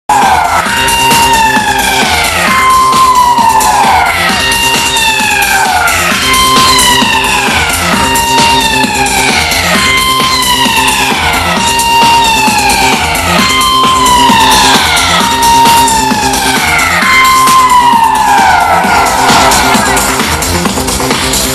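Loud live electronic music on a festival sound system: a siren-like synth wail that starts high and falls in pitch, repeating about every second and three quarters, over a steady low pulsing bed.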